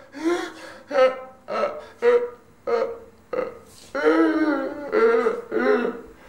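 Sound poetry performed with a man's voice: a rapid chain of short, wordless, pitched vocal bursts, about two a second, with one longer held sound about four seconds in.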